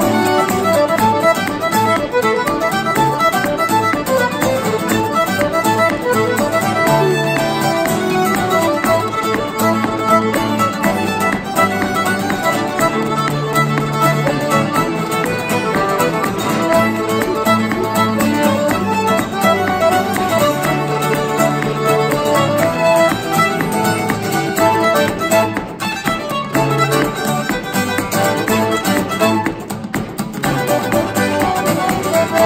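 Fiddle, piano accordion and acoustic guitar playing a lively traditional contra dance tune together, the fiddle carrying the melody over the strummed guitar and accordion.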